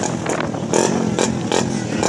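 Several 150 cc racing motorcycles running together, engines idling with a few short revs.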